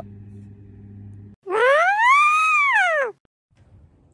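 An edited-in cartoon-style sound effect: a single whistle-like tone that glides up in pitch and back down, lasting about a second and a half, then stops sharply. A low steady hum comes before it and cuts off about a third of the way in.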